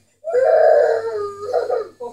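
A young child crying: one long, loud wail, then a shorter cry near the end.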